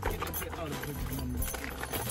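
Faint background voices talking over a low, steady hum.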